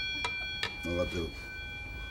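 Buddhist altar bell (orin) at a butsudan, struck and left ringing with a clear metallic tone of several pitches, slowly fading. There are two more light strikes in the first second.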